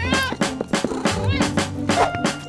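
A cat's meow sound effect near the start, a single arching call that rises and falls in pitch, over background music with a steady drum beat.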